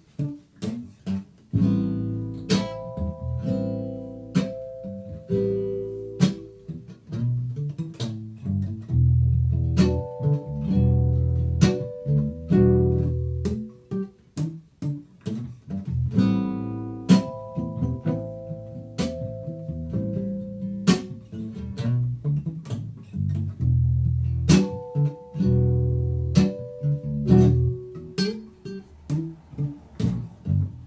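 Instrumental passage from a small acoustic group: a nylon-string classical guitar plucking and strumming chords, with a second small stringed instrument and an electronic keyboard holding notes underneath.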